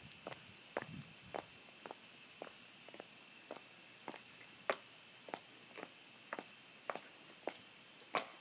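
Footsteps on a hard walkway, about two steps a second at an even walking pace, over a steady high chorus of night insects such as crickets.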